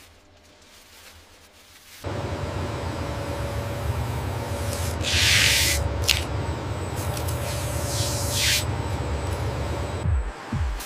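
Assembly-line factory noise: a low, steady machine rumble with a faint hum that starts abruptly about two seconds in. Over it come two bursts of hissing, one near the middle and one near the end, with a sharp click between them.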